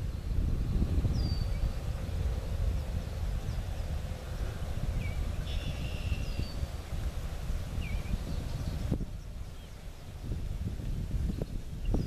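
Wind buffeting the microphone as a steady low rumble, easing for a moment near the end, with a few faint, brief bird chirps over it.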